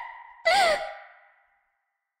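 A woman's short breathy sigh, with a slight rise and fall in pitch, about half a second in. It trails off in reverb and then cuts to dead silence.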